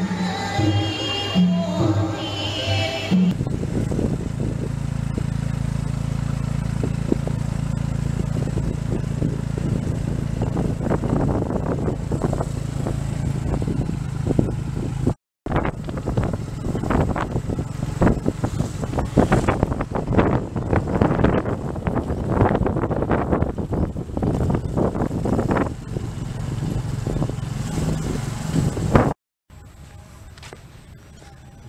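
Stage dance music with singing for the first few seconds, then a steady engine hum. After a brief dropout, a motorcycle towing a tuk-tuk carriage is heard running under heavy wind buffeting on the microphone.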